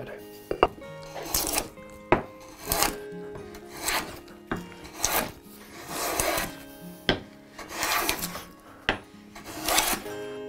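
Hand plane taking repeated strokes along a hardwood board: about seven short shaving hisses, a little over a second apart, with a few sharp knocks in between.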